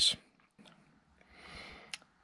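A man's voice trails off at the start, then near silence, then a soft, faint intake of breath building in the second half and a small click just before he speaks again.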